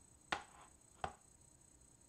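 Two sharp plastic clicks about three quarters of a second apart as a clear plastic stamp set case is set down on a hard tabletop.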